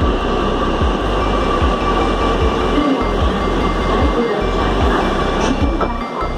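Metro train pulling into the platform and slowing, a continuous rumble of the cars with a steady electric whine above it.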